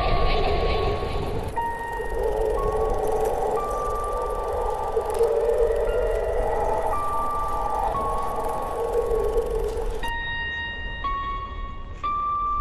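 Horror film soundtrack music: a deep rumble under a dense mid-pitched wash, with high held notes that step between a few pitches every second or two. About ten seconds in, the wash drops out and only the held notes remain.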